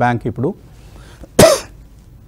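A man's single short, sharp cough about a second and a half in.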